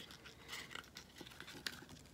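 Faint rustling and a few light clicks of a folded cardstock card being handled.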